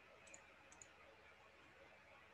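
Near silence: faint room hiss with two faint double clicks in the first second.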